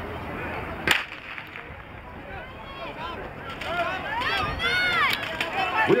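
A single sharp crack about a second in, the starter's pistol firing to start a hurdles race, followed by spectators shouting and cheering, growing louder toward the end.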